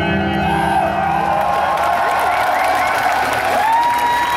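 A rock band's final chord ringing out after the song stops, with a tone held over it that rises and then holds near the end, while the crowd cheers and whoops.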